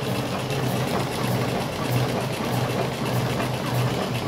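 Electric cigarette filling machine running with a steady mechanical hum.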